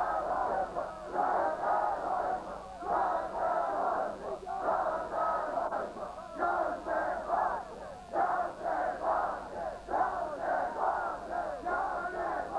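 Large crowd of male mourners chanting a short phrase in unison, repeated in regular surges roughly every two seconds, as a Shia Ashura lamentation chant.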